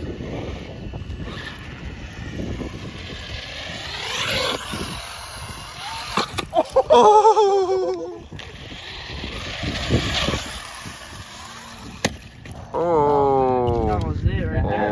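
Traxxas Stampede 4x4 electric RC truck running on concrete: a brushless motor whining up in pitch as it accelerates over tyre noise, a couple of times. Loud shouted exclamations break in around the middle and near the end.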